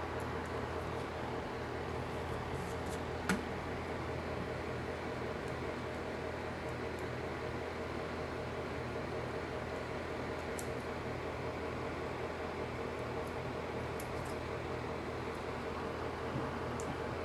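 Electric nail drill (e-file) running at a steady speed while its fine bit cleans up the edge of a nail, a constant motor hum with a thin steady whine; a single click about three seconds in.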